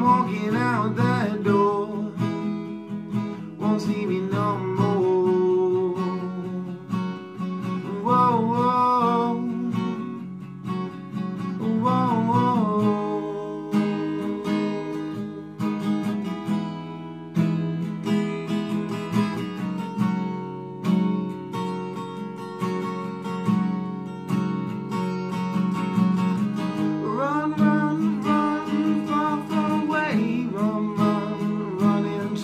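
Acoustic guitar strummed steadily, with a man's voice rising over it in a few short wordless sung phrases, mostly in the first half and again near the end.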